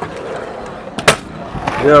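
Stunt scooter wheels rolling on a concrete skatepark surface, with one sharp clack about a second in.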